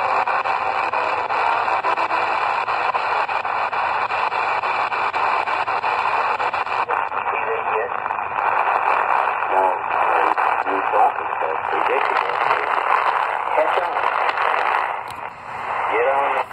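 XHData D219 shortwave radio's speaker giving steady band hiss while it is tuned across the 49-metre band with its telescopic antenna almost fully lowered, a check on whether the set still overloads. Faint voices from weak stations waver in and out of the noise in the second half, the hiss turning duller about seven seconds in, and a clearer voice comes through near the end.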